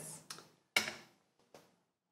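Small porcelain tasting cups set down on a bamboo tea tray: three light clicks, the loudest about three-quarters of a second in.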